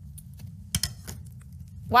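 A few light clicks and taps, the loudest short cluster just under a second in, over a low steady hum: a small crumpled foil ball flicked by a fingertip and skittering along a wooden desk.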